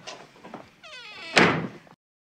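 A short wavering, buzzing tone, then a sudden loud slam-like noise about a second and a half in that fades over half a second.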